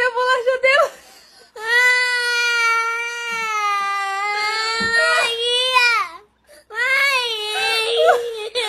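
A toddler crying: a short wavering sob, then a long drawn-out wail of about four seconds that sinks slightly in pitch, and a fresh wail starting near the end.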